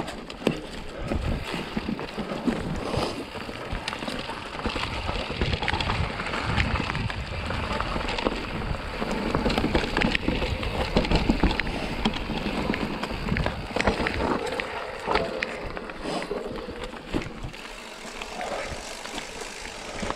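Mountain bike rolling fast down rocky, rooty dirt singletrack: a steady rush of tyre noise broken by frequent short clicks and rattles as the bike goes over roots and rocks.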